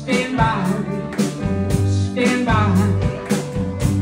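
Live band playing a slow soul groove, with regular drum hits and a steady bass line, and a voice singing over it.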